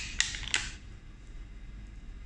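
Plastic packaging and the clear needle cover of an arterial cannula being pulled off: two sharp plastic clicks in the first second, with a brief crinkle, then quiet handling.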